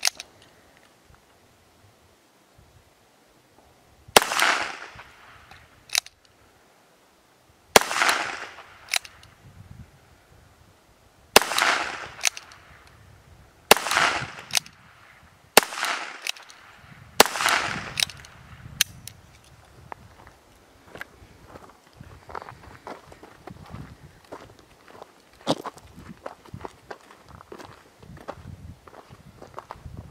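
Ruger Wrangler single-action .22 LR revolver firing six shots of Aguila Super Extra High Velocity 40-grain ammunition, one every two to four seconds. Each sharp crack has a short echo, and lighter clicks come between the shots. Quieter clicking and handling follow the last shot.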